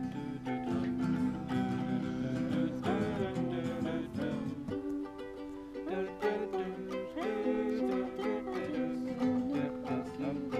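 Ukuleles strummed together, playing a tune in steady chords.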